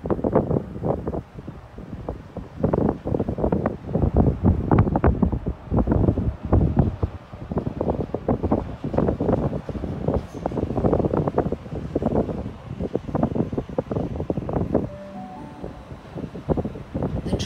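Gusty wind buffeting the microphone, heavy and uneven throughout, over a Sydney Trains electric suburban train running into the platform and slowing as it arrives. A few brief steady tones come near the end.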